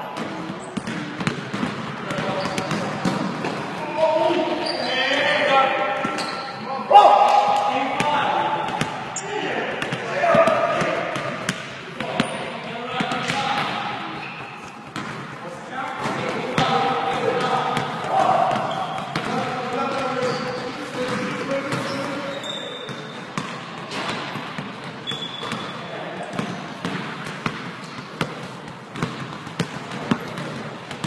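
A basketball bouncing and being dribbled on a hardwood court, many separate thuds through the whole stretch, mixed with players' voices calling out across the gym.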